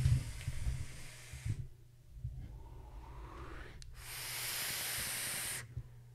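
Drawing hard on a vape: a long airy hiss of air pulled through the device that cuts off abruptly about one and a half seconds in, quieter breathing, then a second long draw from about four seconds in that also stops sharply.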